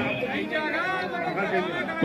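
Chatter of several people's voices in a gathered audience, quieter than the amplified speaker, with curving, higher-pitched speech running through it.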